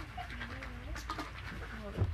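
A person's voice making a drawn-out, wavering hum or murmur without clear words.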